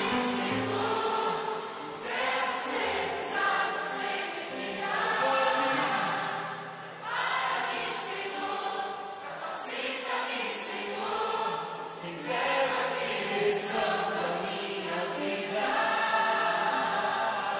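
A gospel worship song played live: several voices singing together in harmony over a band, with cymbal-like strokes recurring through it.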